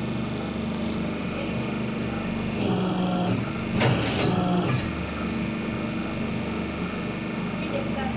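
Paper plate making machine running with a steady hum. About a third of the way in the sound changes for about two seconds, with a short, louder clatter near the middle.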